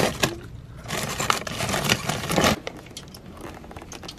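Plastic water bottles pulled from a shrink-wrapped case: the plastic film and bottles crinkle for about a second and a half, with sharp clicks and knocks as they are handled. Fainter rustles and ticks follow as the bottles are set in a bucket.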